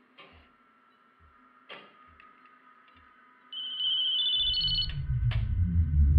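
A phone's electronic ringtone: a short run of high beeping tones stepping upward, starting a little past halfway. Soft low pulses come about once a second before it, and a loud low rumble sets in under the ringtone.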